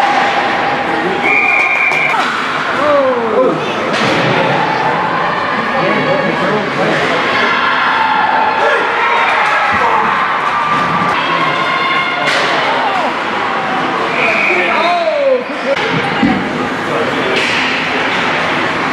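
Hockey game noise in an ice rink: spectators talking and calling out, with several sharp knocks of pucks and sticks against the boards. Two short, steady high tones sound briefly, once near the start and once near the end.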